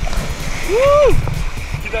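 Small waves breaking and washing up the sand, with wind rumble on the microphone. About a second in, one short vocal exclamation rises and falls in pitch.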